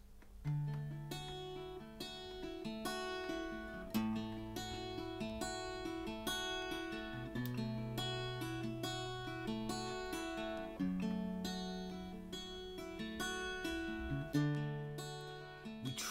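A solo acoustic guitar plays a song's instrumental intro: a flowing pattern of plucked chord notes over longer-held bass notes, starting about half a second in.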